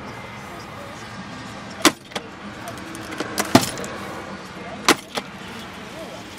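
Glovebox lid in a GAZ 31105 Volga's dashboard being handled and shut. Several sharp clicks and knocks start about two seconds in, the loudest a little past halfway.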